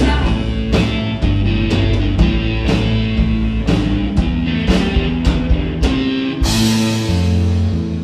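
Live indie blues-rock band playing an instrumental stretch with no vocals: electric guitars over a steady drum-kit beat, with cymbals crashing near the end.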